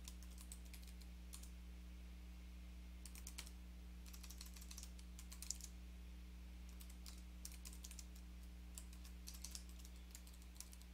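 Faint computer keyboard typing in short bursts of keystrokes with pauses between them, over a steady low hum.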